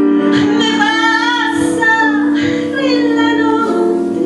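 A woman singing long held notes into a microphone, accompanied by an electric piano.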